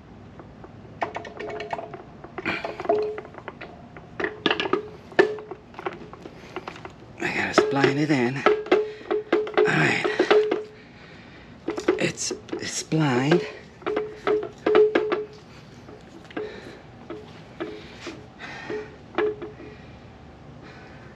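Metal knocks, clinks and scrapes as an aluminium B-series transmission case is worked onto an F23 engine block, many knocks ringing briefly on one note. The knocking is busiest in the middle, with a dense run of it from about a third of the way in.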